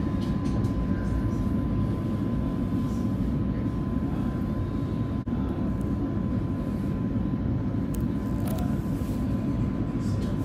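Oslo Metro train running uphill, heard from inside the carriage: a steady low rumble of wheels on rail with a thin constant whine above it. The sound drops out for a split second about halfway through.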